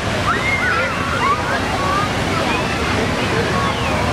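Crown Fountain water splashing steadily into its shallow pool, an even rush. Children's high voices shout and squeal faintly over it, mostly in the first half.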